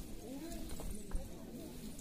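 A pause in the women's chanted folk song: faint background voices, with a few soft knocks and one sharper click about a second in.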